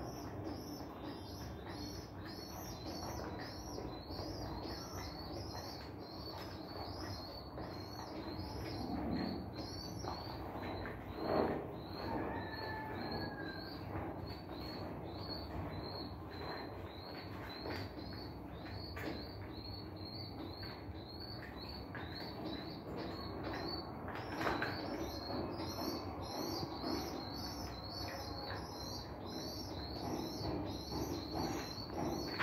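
Pigeon squabs peeping in a fast, regular high-pitched rhythm as the parent pigeon feeds them beak to beak in the nest, with a short pause midway. Now and then there is a louder rustle or scuffle of feathers, the loudest about eleven seconds in.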